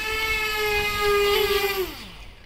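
The twin electric motors and propellers of a 3D-printed bicopter hovering with a steady whine. Near the end the whine falls in pitch and dies away as the craft is caught in the hand and the motors spool down.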